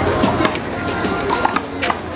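A rubber handball slapping on concrete and against the wall: several sharp smacks, a pair about half a second in and more near the end, over background music and crowd chatter.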